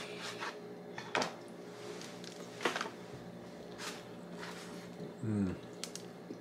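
Quiet eating sounds: a few soft clicks and crinkles as a sandwich is handled and bitten, then a short low 'mm' that falls in pitch near the end, made with a full mouth.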